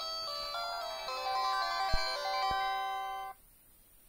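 A Samsung mobile phone's power-on jingle: a short electronic melody of stepped tones from the handset's small speaker, cutting off a little over three seconds in.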